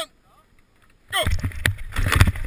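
After a second of near silence, a ski-cross start gate drops with a sudden loud clatter and skis scrape out over the snow, with a sharp knock about half a second later.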